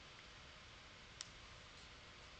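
Near silence: faint room tone, with a single faint click a little over a second in.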